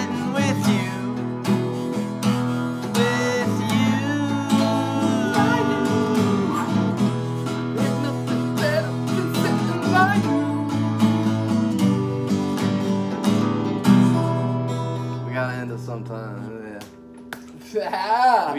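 Two acoustic guitars playing an instrumental blues passage with bent notes. The passage ends on a last chord about fourteen seconds in, which rings and fades away.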